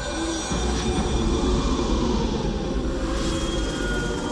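Sound-effect rumble of a train, with a steady high metallic squeal like wheels grinding on rails. The low rumble swells from about half a second in.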